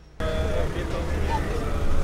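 Sound comes in suddenly about a fifth of a second in: people's voices over the steady low rumble of a Skoda team car's engine running close by.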